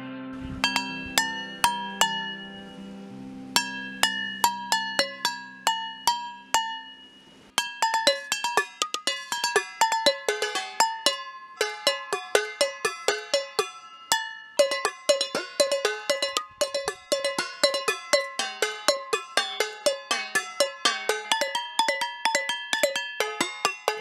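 Enamel and stainless steel camp dishes (mugs, plates and pans) struck with wooden sticks as a percussion set, each hit ringing out a different metallic note in a steady rhythm. The pattern gets busier and denser about a third of the way in. A guitar chord fades out under the first few hits.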